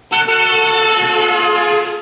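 Car horn sounding in one continuous blast of about two seconds as the car speeds past, its pitch changing with the Doppler effect.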